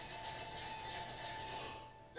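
Chime sound effect from an animated video's soundtrack, played through classroom speakers: two steady held tones, one high and one middle, fading out near the end.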